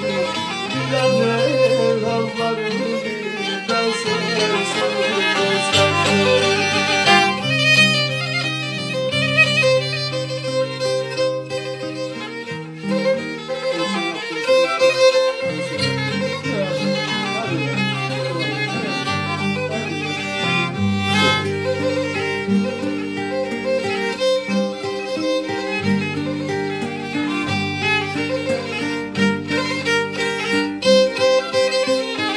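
Black Sea kemençe playing a quick instrumental melody, with acoustic guitar holding low accompanying notes that change every second or two.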